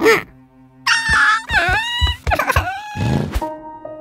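Cartoon background music with wordless character vocal sounds that glide down and back up in pitch, after a short sharp sound at the start; steady held notes come in near the end.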